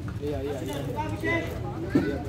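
Players and spectators shouting and calling out during a football match, several voices overlapping without clear words, with a single short thump near the end.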